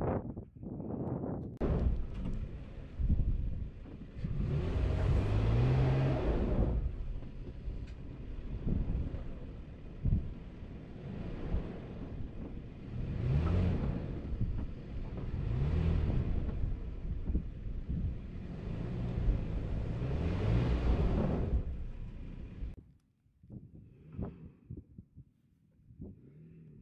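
Off-road SUV engine revving in several surges as it climbs steep slickrock, the pitch rising with each burst of throttle. The sound falls away about three seconds before the end.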